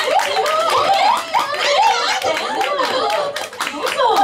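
Several young women's voices talking over one another into microphones, with repeated hand clapping running through.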